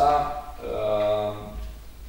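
A man's voice holding a long drawn-out hesitation sound ("uhh") in two steady stretches in the middle of a sentence, about a second and a half in all.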